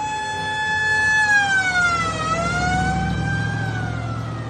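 Siren on a black-and-white 1960s Ford Galaxie squad car, a single wailing tone that holds, dips and climbs again about two seconds in, then sinks near the end. Under it, the car's engine rumbles louder as it pulls away.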